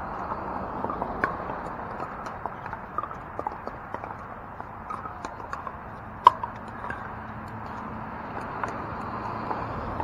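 Pickleball paddles striking the hollow plastic ball during a rally: a string of sharp, hollow pocks, the loudest about six seconds in. Fainter pocks from other games on neighbouring courts sound over a steady background murmur.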